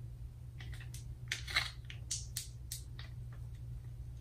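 Plastic crackling and clicking as the hair-dye kit's plastic parts are handled: a run of irregular sharp crackles starting about half a second in, thickest around a second and a half in, and thinning out toward the end.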